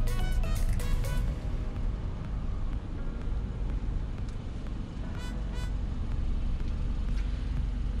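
Background music with a beat that cuts out about a second in, leaving the low steady rumble of a car reversing slowly, heard from inside the cabin. Two brief high ticks a little past the middle.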